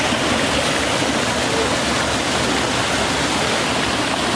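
Fast-flowing water rushing and foaming through a channel, a loud, steady rush with no let-up.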